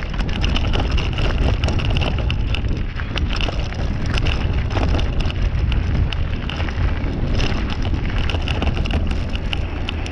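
Mountain bike rolling over a rough gravel and stone track: the tyres crunch and the bike rattles in a constant run of small clicks, with wind rumbling on the microphone.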